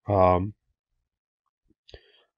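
A man's voice holding a filler 'um' for about half a second, then a pause of room quiet broken by a faint short click or two near the end.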